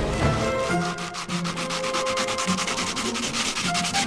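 Rapid, rhythmic scraping, about ten strokes a second, starting about a second in and stopping just before the end, with music underneath.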